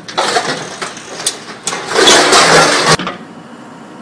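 MC430R hydraulic scrap shear on a mini excavator working scrap metal: the excavator's engine runs under hydraulic load with metal scraping and crunching. It is loudest from about two seconds in, then cuts off suddenly about a second later.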